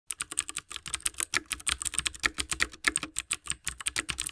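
Computer keyboard typing sound effect: a rapid, even run of keystroke clicks accompanying text being typed onto the screen.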